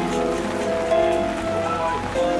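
Rain pattering on umbrellas, mixed with music playing held melodic notes.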